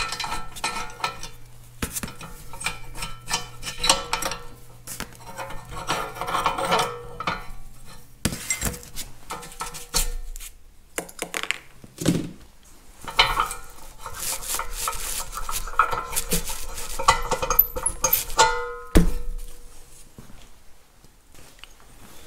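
Small steel parts of a tractor throttle lever assembly clinking, tapping and rattling as they are taken apart by hand, in scattered irregular knocks with short metallic ringing.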